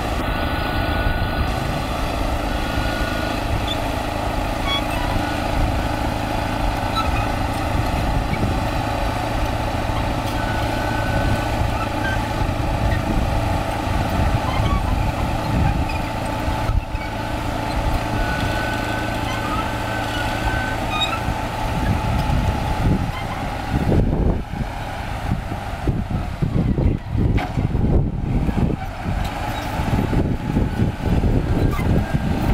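Chetra T-20 crawler bulldozer's diesel engine running steadily under load as it pushes soil, with a few short high squeaks from the machine. Over the last third the sound turns uneven, with irregular low rumbles.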